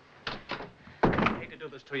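A door banging open about a second in, after two lighter clicks, and a man starting to speak near the end.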